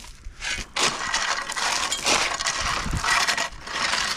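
Steel hand tools scraping and crunching through gravelly soil: a couple of short scrapes, then a steady scrape of grit and stones for about three seconds.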